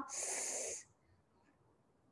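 A short breath drawn in between spoken phrases, a soft hiss lasting under a second near the start.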